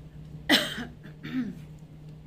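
A woman coughs twice. The first cough, about half a second in, is sharp and loud; the second, about a second later, is quieter.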